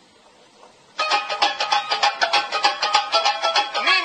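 Music cuts in suddenly about a second in, loud, with fast, closely repeated notes. Before it there is only faint room sound.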